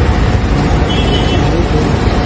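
Steady low rumble of a car engine running close by, with faint voices in the background.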